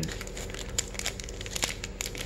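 Trading cards and their packaging being handled: irregular crinkling with many small light clicks, over a low steady hum.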